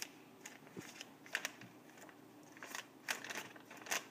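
Faint scattered crinkles and clicks of a Lego minifigure packet being handled and worked open with a blade.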